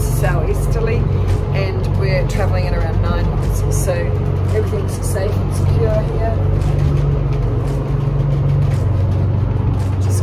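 Steady low drone of a motor cruiser's engines heard inside the cabin while the boat runs through choppy sea, with indistinct voices over it.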